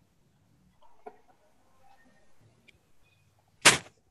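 A single short, sharp burst of noise about three-quarters of the way in, much louder than anything else, after a stretch of faint scattered clicks and rustling.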